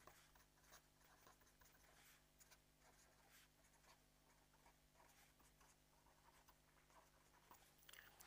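Near silence with faint, irregular scratches of writing, over a low steady hum.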